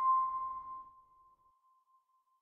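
A steady electronic tone dying away over about a second and a half, leaving a faint trace of it hanging on.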